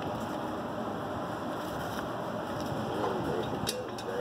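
Steady rushing background noise with a single short click near the end.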